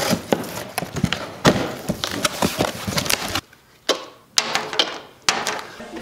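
A cardboard box being cut open with scissors and its flaps and packing pulled apart: a dense run of scraping, crackling and clicks. After a sudden drop to quiet about halfway through come a few sharp knocks.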